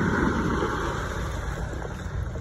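Steady, dense rustling of a heap of live sand crabs crawling over one another, fading slightly toward the end.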